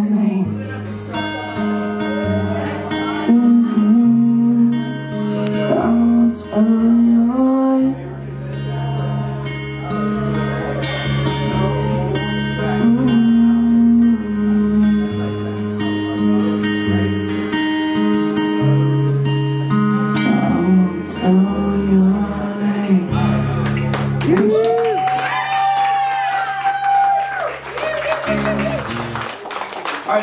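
Live amplified song: a man singing over a strummed acoustic guitar. Near the end he holds a long, wavering note, and the song stops just before the close.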